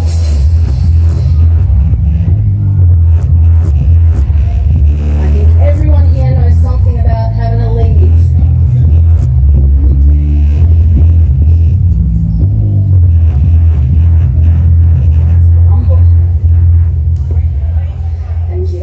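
Woman singing live into a microphone over a backing track, with a very loud bass line that changes note every second or two and dominates the sound.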